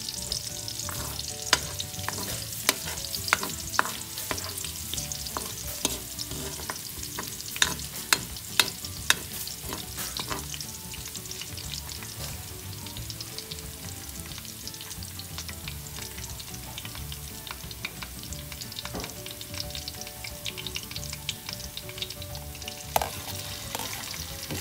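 Minced garlic sizzling in hot cooking oil in a steel wok, a steady hiss with scattered sharp clicks, several in the first ten seconds and one more near the end.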